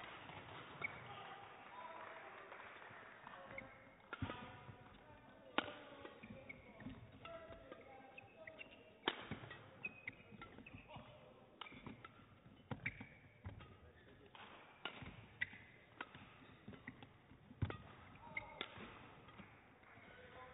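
A badminton rally: sharp racket strikes on the shuttlecock, a second or two apart, with shoes squeaking on the court between hits.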